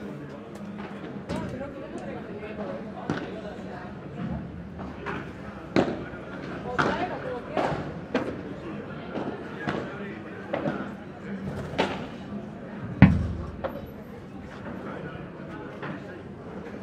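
Padel rally: a run of sharp pops from the ball being struck by paddles and bouncing off the court, with a heavy thud about 13 seconds in, the loudest sound, against a murmur of voices.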